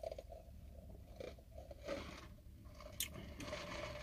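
Faint mouth sounds of a person eating and drinking: soft chewing and a few short noises, with a sharp click about three seconds in.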